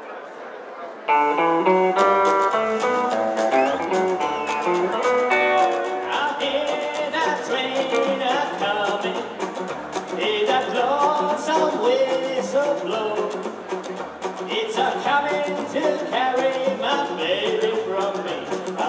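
A live rockabilly band starts playing suddenly about a second in, with no singing: an electric guitar picks the melody over acoustic rhythm guitar, upright double bass and drums.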